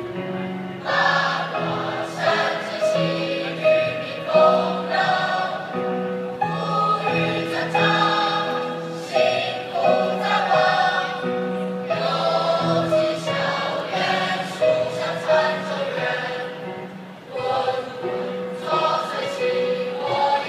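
A large group of men and women singing together as a choir, holding sustained notes that change pitch every second or so.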